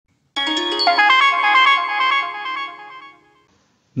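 A short synthesized jingle: a quick run of ringing, chime-like notes that hang on and fade out about three seconds in.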